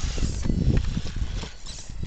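Axial XR10 rock crawler clambering up rocks, its knobby tyres and chassis knocking and scraping on the stone in an irregular clatter. The knocking is loudest in the first second and eases off later.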